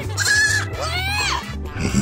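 A goat bleating twice: a short flat call, then a longer one that rises and falls. Background music with a steady low beat runs under it.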